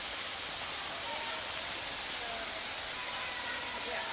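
Steady, even rushing noise, with faint distant voices now and then.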